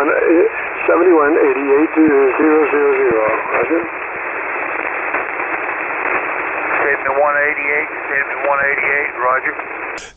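A man's voice on 40-metre single-sideband radio, coming in narrow and tinny over steady band hiss, from a station running an Icom IC-7300: he is back on 7.188 MHz after his VFO had drifted off frequency. The talk pauses to bare hiss for a couple of seconds mid-way.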